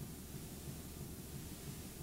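Steady hiss with a low hum underneath and no distinct events: the noise floor of a blank stretch of analog videotape.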